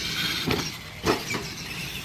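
Radio-controlled monster trucks driving on a dirt track, electric motors whining, with a few short knocks about half a second and a second in.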